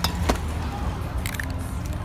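Two sharp clicks of a spray can or lid being handled, then about a second later a short hiss of aerosol spray paint being sprayed, over a steady low rumble of street ambience.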